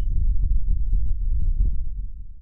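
Deep, throbbing bass rumble of a logo-intro sound effect, beginning to fade near the end.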